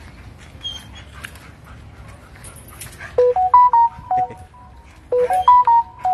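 A short electronic melody of clean beeping notes, stepping up and then back down, played twice about two seconds apart.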